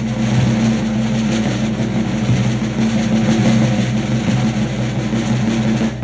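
A live soul band's intro: a steady drum roll under a held low chord, one even build without a break.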